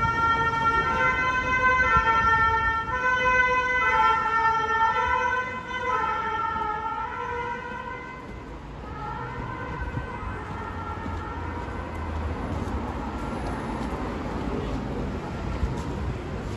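Two-tone emergency-vehicle siren of the French 'pin-pon' kind, sounding two notes in turn over and over. It is loud for the first half, then grows fainter and fades out about ten seconds in, over a low rumble of street traffic.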